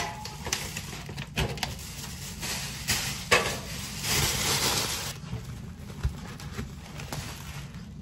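Tissue paper rustling and crinkling as it is handled and stuffed into a gift bag, in several bursts, the longest lasting about two seconds from about three seconds in.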